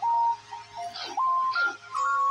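Simple electronic melody of pure, beep-like notes stepping up and down between a few pitches, over a steady low hum.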